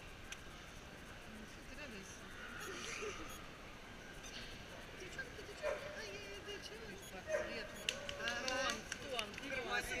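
Indistinct voices of people talking nearby, over a low background of chatter, growing louder and busier in the second half.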